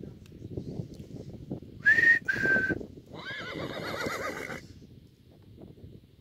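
Horse whinnying close by: a loud, high, steady-pitched opening about two seconds in, broken by a short gap, then a longer call that wavers up and down and stops about halfway through.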